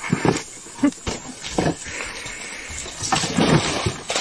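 Chimpanzees scuffling over a wooden box on dry leaf litter: irregular rustles and knocks, with a longer spell of rustling about three seconds in.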